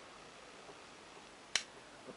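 A single sharp finger snap about one and a half seconds in, over quiet room tone.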